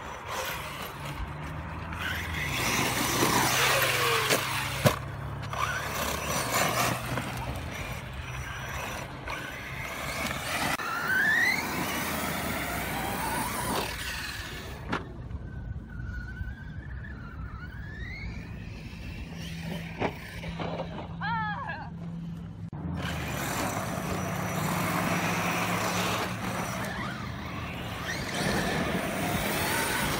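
A 6S brushless electric RC car's motor whining up and down with the throttle, with its tyres spraying dirt. It goes quieter for a spell past the middle, then the car runs hard again near the end.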